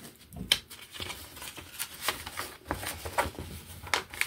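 Paper rustling as a kit's instruction sheet is handled and lifted, with scattered light clicks and taps of handling, one sharper click about half a second in.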